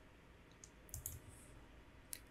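Near silence, with a few faint short clicks about half a second and a second in.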